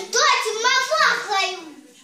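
A small child's voice speaking, with a rising and falling pitch, fading out after about a second and a half.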